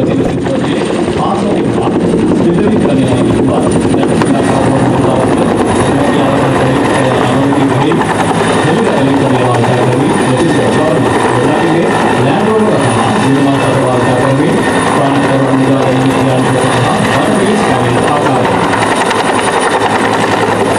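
Military utility helicopter hovering low overhead, its rotor and turbine running loud and steady throughout.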